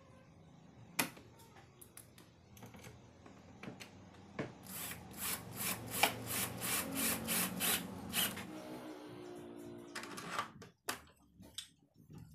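Cordless drill-driver driving screws into a door lock's metal handle plate on a wooden door: a run of evenly spaced clicks, about three a second, over the motor's low hum, then a short burst of the motor and a few knocks near the end.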